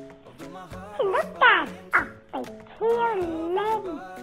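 Background music with a steady beat. Over it come loud, dog-like yelping cries: quick falling yelps about a second in, then a longer wavering howl-like cry near the end.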